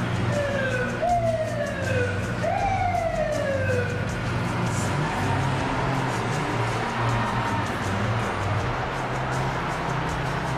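Fire engine siren sounding as a run of falling wails, each about a second long, dying away about four seconds in, over a steady low hum.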